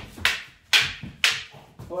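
Hand-held practice sticks clacking together in a slow, even striking drill, about two sharp strikes a second, each with a short ringing tail.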